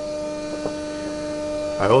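Bedini-style pulse motor-generator with a 24-pole magnet rotor running steadily unloaded at about 1500 RPM, giving a steady hum with a clear tone. There is one faint tick about two-thirds of a second in.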